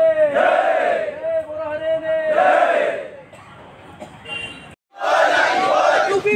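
Protesters chanting slogans in call and response: a drawn-out shouted call answered by the crowd's massed shout, twice over. It then falls quieter, breaks off in a brief silence near the fifth second, and the crowd noise comes back.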